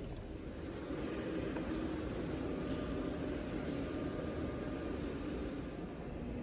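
Steady low rumble of room tone in a large gallery hall, like a ventilation hum, with no distinct sounds standing out.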